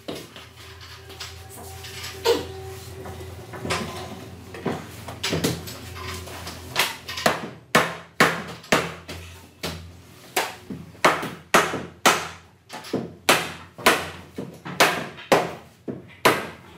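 A hammer knocking the joints of a gỗ hương (padauk) wooden daybed frame together. Scattered knocks come first, then from about seven seconds in a steady run of sharp blows, two to three a second.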